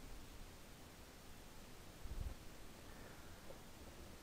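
Very faint background hiss and room tone, with one faint low bump about halfway through.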